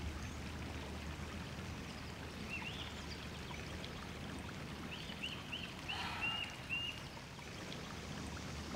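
Quiet outdoor ambience, a steady low hum and hiss, with a bird giving short chirps: one or two about two and a half seconds in, then a quick run of them between about five and seven seconds in.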